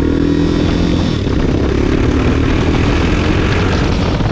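Motorcycle engine running steadily while riding, with wind rushing over the microphone. The engine's hum is clearest in the first second, then wind and road noise take over.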